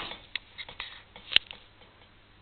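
A few light clicks over a quiet room, with one sharper click a little past halfway.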